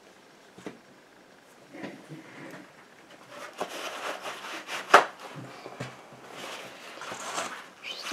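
A small glass jar being handled and rubbed with a paper towel: irregular papery rustling and rubbing, with one sharp knock about five seconds in, the loudest sound.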